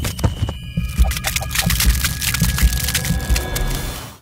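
Outro sound effect for an animated end card: a dense rush of clicks and ticks over low thumps and a steady hum.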